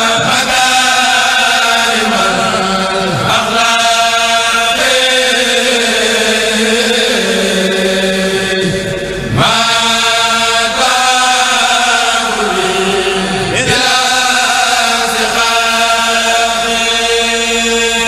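A group of men chanting an Arabic qasida in unison, a cappella, in long drawn-out held notes. The phrases break off briefly for breath a few times and the chant starts again.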